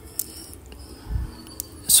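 A few sharp clicks from a computer keyboard and mouse as code is selected, cut and pasted, with a soft low thump just after a second in.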